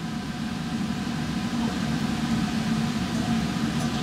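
Steady ventilation noise from a laboratory fume hood: an even rushing sound with a low hum underneath.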